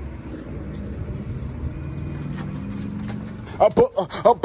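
A motor vehicle's engine running nearby, a steady low note that rises slightly in pitch partway through. A man's voice comes in loudly near the end.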